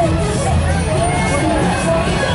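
Parade music with a sung melody playing over loudspeakers, mixed with crowd chatter and a low rumble.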